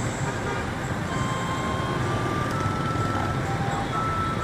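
Steady road-traffic noise from riding among dense motorbike and car traffic: a continuous low rumble of small engines and tyres.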